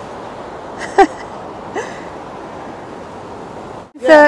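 Water rushing over a concrete river weir, a steady hiss. A short pitched call, the loudest sound, cuts in about a second in, with a fainter rising one just after.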